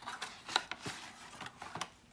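Hands opening a cardboard trading-card box: paper and card rustling, with several sharp clicks and taps, the loudest about half a second in and again near the end.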